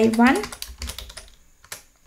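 Typing on a computer keyboard: a run of several quick keystrokes, growing fainter towards the end.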